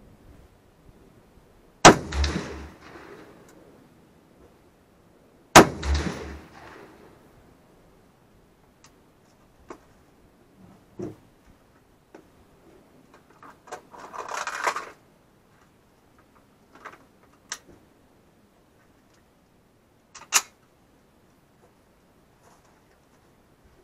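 Two SKS semi-automatic rifle shots (7.62×39mm), about four seconds apart, each echoing back off the range for over a second. Then scattered small clicks and knocks, a brief rustle and a sharper click near the end.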